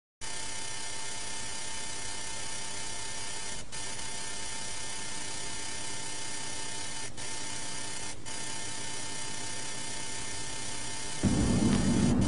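Steady hiss with a faint hum, the noise of an old analogue TV recording on videotape. The hiss drops out briefly three times, and a louder low rumble comes in near the end.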